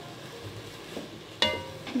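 Ground turkey and vegetables sizzling quietly in a pot. About one and a half seconds in, a sudden clink with a short ringing tone.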